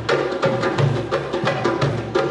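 Live acoustic ensemble playing: a hand drum struck in a quick, steady rhythm over low upright bass notes.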